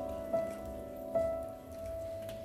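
Sparse piano-sound notes on a stage keyboard, struck one at a time just under a second apart and each left to ring and fade.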